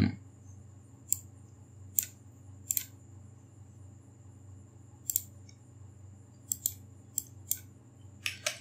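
Computer mouse button clicking: about nine short, sharp clicks at irregular intervals, some in quick pairs, over a faint steady low hum.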